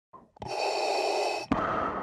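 Darth Vader's mechanical respirator breathing: a long hissing inhale, then a sharp click about one and a half seconds in as the exhale begins.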